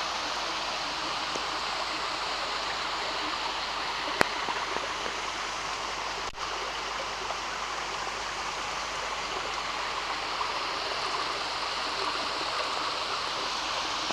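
Small waterfall and creek water rushing steadily over a layered rock ledge into a pool, an even, unbroken splashing hiss. A single sharp click comes about four seconds in.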